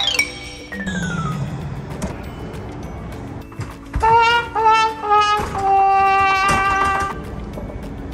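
Comedy sound effects over background music: falling pitch glides early on, then a brass sting of three short notes stepping down and one long held note, the classic 'wah-wah-wah-waaah' sad-trombone gag.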